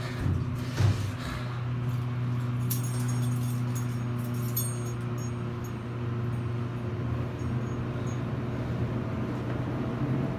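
Otis elevator car travelling in its shaft: a steady low hum and rumble inside the cab. The doors shut with a knock about a second in.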